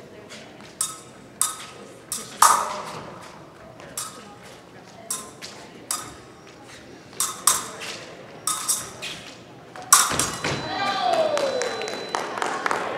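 Épée blades clashing and ringing, a dozen or so sharp metallic hits scattered through the exchange. About ten seconds in comes a loud hit, then a voice calling out with a falling pitch.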